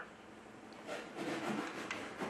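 Faint rustling of a hand and sleeve moving toward the control valve's panel, with a light click near the end.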